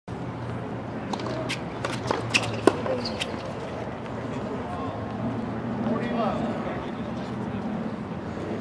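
Tennis ball knocks on a hard court: a quick string of sharp pops in the first half, the loudest about two and a half seconds in. A murmur of voices runs underneath.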